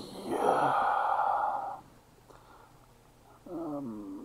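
A long breathy exhale, like a sigh, lasting about a second and a half. Near the end a short voiced sound follows.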